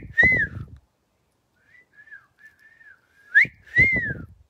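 A person whistling a two-note call, a quick upward slide and then a rise-and-fall note, given twice about three and a half seconds apart, with fainter wavering whistling in between.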